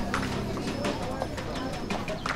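A dense crowd of pedestrians in a busy shopping street: many voices talking at once, with footsteps clicking on the paving.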